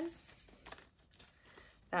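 Faint rustling and crinkling of paper banknotes being handled, with a few soft paper clicks about a second in.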